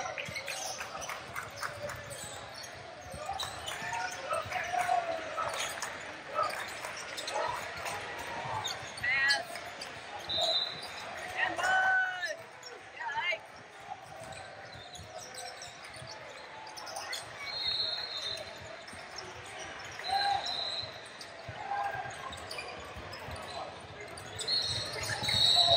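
Basketball bouncing on a hardwood gym floor during a game, with indistinct shouts of players and spectators in a large hall. A few short, high, steady tones sound in the second half.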